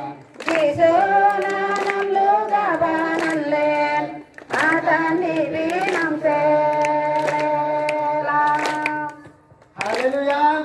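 A congregation of women and children singing a hymn together in long held phrases, with hand claps. The singing breaks briefly three times: just after the start, a little past four seconds in, and near the end.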